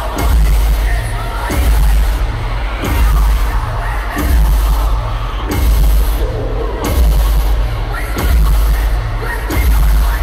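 Live heavy band music played loud through an arena sound system. Pounding bass hits in a steady beat about once a second dominate the mix.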